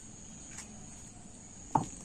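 Insects, likely crickets, chirping steadily at a high pitch in the garden background. Near the end a person's voice breaks in with a short, loud, falling sound.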